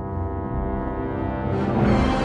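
Television programme's closing theme music: a sustained low chord over a deep, pulsing bass, swelling and brightening near the end.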